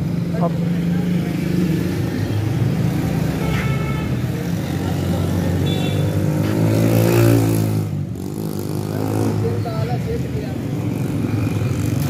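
Motor vehicle engine idling steadily in street traffic, with an engine rising in pitch and falling back again between about six and eight seconds in.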